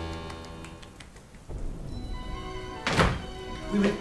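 Music dies away, then a low rumble builds and breaks into a sharp crack of thunder about three seconds in.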